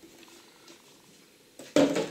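Quiet room tone, then near the end one short, loud knock as the hard plastic storage box is handled on the table.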